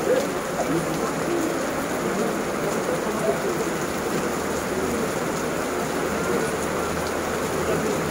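Steady heavy rain falling on paving and grass, an even hiss of drops.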